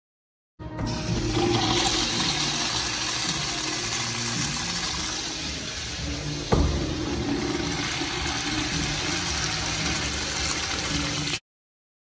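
Wall-hung urinal flushing through its chrome flushometer valve: a loud, steady rush of water that starts suddenly and stops abruptly near the end, with one sharp knock about halfway through.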